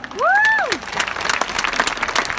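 A loud rising-then-falling whoop from one person, followed by a crowd applauding with dense clapping.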